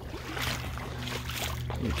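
Ankle-deep water splashing and trickling softly in short irregular bursts as someone wades slowly over a mud flat, with a steady low hum underneath.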